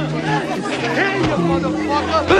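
Several men yelling and shouting over one another in a chaotic street fight, with sustained music notes underneath.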